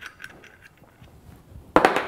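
Faint small metallic clicks of an 8 mm Allen key turning the threaded insert out of a scuba cylinder valve, then a single sudden, loud sharp noise near the end that fades quickly.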